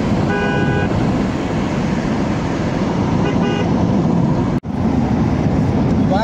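Steady road noise of a car driving, with a vehicle horn sounding for about half a second near the start and again briefly about three seconds in. The sound drops out for an instant about four and a half seconds in.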